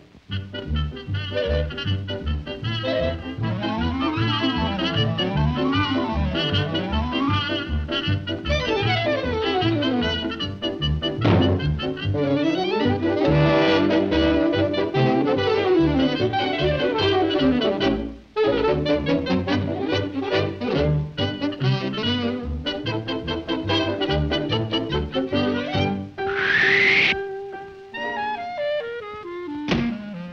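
Lively orchestral cartoon score with brass and woodwinds, playing fast runs up and down the scale. About 26 seconds in there is a short, bright rising glide.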